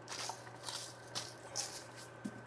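Salt shaken from a cylindrical salt container onto fried quail pieces: about three short, high, hissy rattles of grains.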